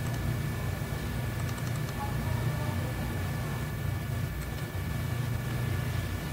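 Steady low hum with a faint high whine over it, the background noise of the recording setup. There are a few faint clicks about a second and a half in and again past four seconds.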